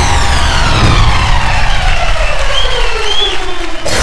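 A long falling sweep effect in the dance-act soundtrack: several tones slide down in pitch together for nearly four seconds, then cut off suddenly just before the end.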